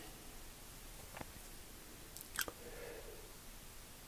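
Quiet handling sounds as a bowie knife is turned in gloved hands, with two faint clicks, one about a second in and one near the middle.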